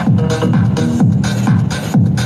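Techno/house dance track played in a DJ set, with a steady beat and bass notes that slide down in pitch about once a second.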